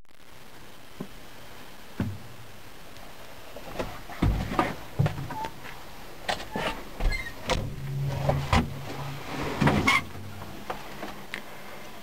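Handling and movement noise inside a bulldozer cab: scattered knocks, rustles and short creaks as someone moves about with the camera, with a short low drone a little past the middle.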